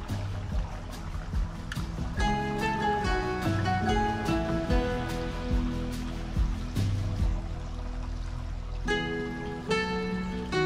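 Background music: a gentle melody of plucked notes, one after another.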